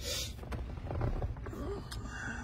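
Low, steady rumble in the cab of a 2017 Chevrolet Silverado with its 5.3-litre V8 idling. A short breath-like hiss comes right at the start, and a faint voice murmurs about a second and a half in.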